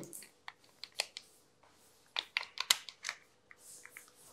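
A scattering of light clicks and taps, about a dozen short ones, most bunched together around the middle, over a faint steady tone.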